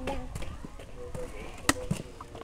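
A trailing word of speech at the start, then faint talk and a single sharp knock about 1.7 seconds in.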